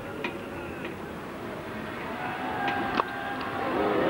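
Cricket crowd murmuring in the stands, with one sharp crack of bat on ball about three seconds in.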